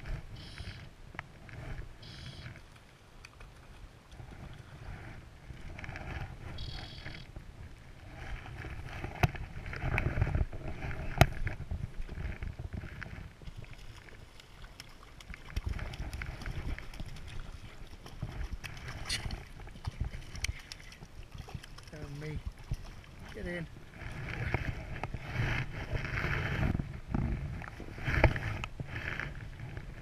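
Hooked trout being played to the bank, splashing at the surface in irregular bursts, with wind rumbling on the microphone.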